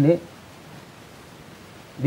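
A man's speech breaks off just after the start, then a pause of steady, faint hiss: studio room tone.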